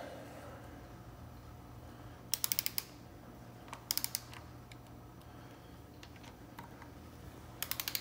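Ratchet of a Snap-on torque wrench clicking in three short rapid runs as bolts are run down to a little tension before final torquing, with a few lone ticks and a faint steady hum beneath.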